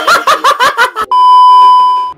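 A short burst of laughter, then about a second in a loud, steady one-pitch censor bleep that lasts about a second and cuts off abruptly.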